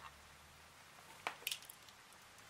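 A single click a little over a second in, then a short run of light clicking and scraping. The sound comes from a handheld Wavetek 27XT digital multimeter being switched on with its rotary dial and set down.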